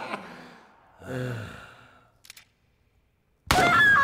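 A man's laughter fades out, then a low sigh-like groan from a man about a second in, a faint click, and a moment of near silence. Loud laughter with music cuts in suddenly near the end.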